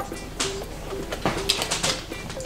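Carbonated water poured from a plastic bottle into a glass packed with crushed ice: a fizzing hiss with a few sharp clicks, clustered near the end.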